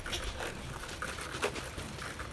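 Footsteps on a dirt trail: faint soft scuffs roughly every half second over a quiet outdoor hiss.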